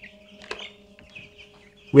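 Young broiler chicks peeping: a faint, continuous high-pitched chatter of many chicks. There are a couple of light knocks about half a second and a second in as a chick is set into the plastic bowl on a kitchen scale.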